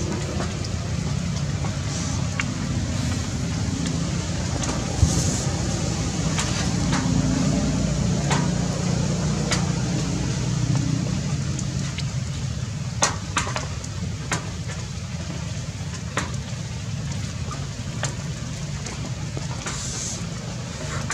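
A motor vehicle engine running steadily as a low rumble, with a few sharp clicks.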